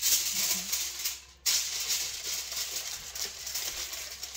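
Aluminium foil crinkling as it is pressed and crushed around a head of hair, with a short pause about a second in.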